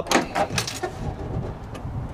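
Several sharp clicks and a metallic rattle in the first second, then quieter handling noise: a trailer's aluminium diamond-plate compartment door being unlatched and opened.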